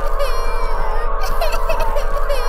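Heavily distorted, looping audio effect: a steady drone of fixed tones with a rapid, even stutter, and high falling glides that repeat about every second and a half.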